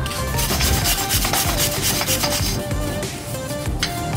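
Wire brush scrubbing rust off the face of a car's wheel hub, over background music.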